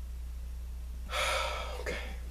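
A man's sharp, audible breath about a second in, lasting under a second, over a steady low electrical hum, followed at once by a spoken 'Okay'.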